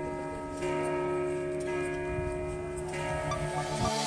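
Church bells ringing, with a new stroke about once a second and each one ringing on into the next.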